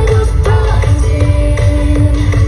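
Loud live pop music over a concert sound system, with a heavy bass beat and sustained synth and vocal lines, heard from within the crowd.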